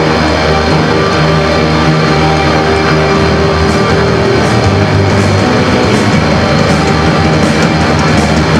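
Live punk band playing loud, distorted music: electric bass and guitar with drums, dense and unbroken.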